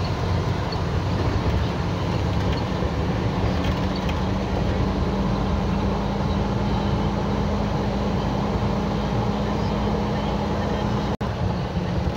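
Truck driving along a dirt road, heard from inside the cab: a steady engine drone over a constant rumble of road noise. The sound cuts out for an instant near the end.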